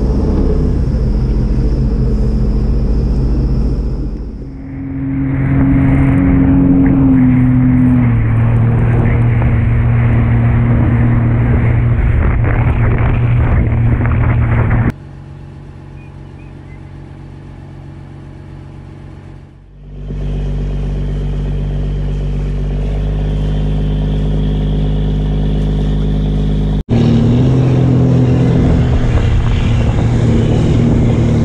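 Boat engines running steadily under way, a low drone with rushing water and wind, heard across several cuts. For a few seconds in the middle the engine hum is quieter and muffled, as heard inside the boat's wheelhouse.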